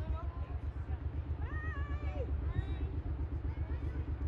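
Distant people's voices, one calling out about halfway through, over a steady low rumble.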